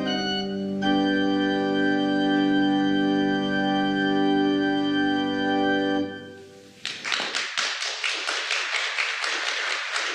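Church organ holding the final chords of the postlude, a change of chord just under a second in, then the sound dies away about six seconds in. About a second later the congregation breaks into applause.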